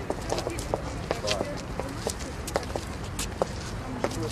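Footsteps of heeled boots and hard shoes on stone flagstone paving: a run of irregular, sharp clicks from two people walking, over a steady low rumble.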